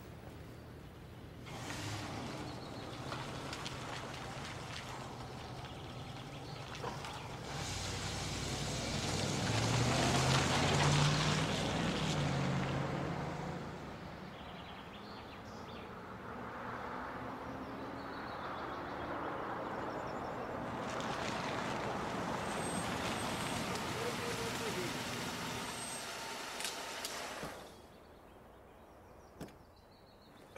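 A car engine and tyres as a vehicle drives along and pulls in. The sound swells to its loudest about ten seconds in, with the engine pitch rising. It drops away sharply near the end as the car stops.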